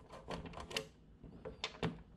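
A screwdriver working a saw nut in the wooden handle of a 1940s Disston hand saw: a run of short, sharp clicks and taps, about six in two seconds, unevenly spaced.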